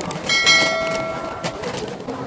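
A single bright bell ding that rings out and fades over about a second, the notification-bell sound effect of an animated subscribe button, over store background noise.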